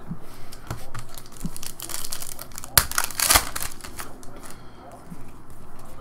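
Crinkling and crackling of plastic as trading cards and a clear plastic card sleeve are handled, loudest in a burst about three seconds in.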